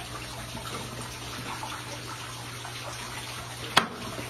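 Steady running water with a low, even hum beneath it, and a single sharp click near the end.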